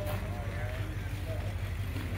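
A steady low hum with faint voices talking in the distance.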